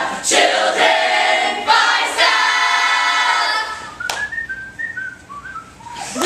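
A group of young men and women singing a cheer together, ending on one long held note. After it a single person whistles a short phrase of a few notes, quieter.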